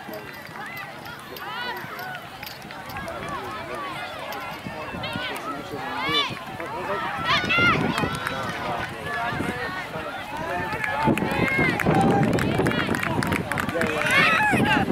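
Many overlapping voices of players and spectators shouting and calling across the field, in short rising-and-falling cries. They grow louder in the last few seconds.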